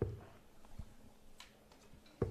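Steel-tip dart striking a Unicorn bristle dartboard with a short, sharp thud at the start, followed under a second later by a fainter knock and then a light click.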